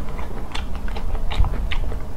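A person chewing a mouthful of braised chicken and eggplant with the mouth closed: short mouth clicks about three times a second.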